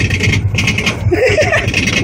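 Roller coaster train climbing a chain lift hill: a steady low rumble from the lift chain with rapid, even clicking of the anti-rollback ratchet. A brief voice sounds just past the middle.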